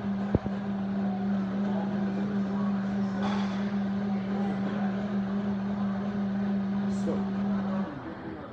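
Countertop blender inside a clear sound enclosure, running with a steady even hum as it blends a shake of ice, strawberries and protein mix. It shuts off abruptly near the end.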